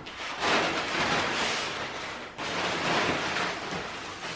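A large sheet of Everbilt plastic house wrap rustling and crinkling as it is shaken out and spread across a concrete floor, in two long bouts with a brief pause a little past halfway.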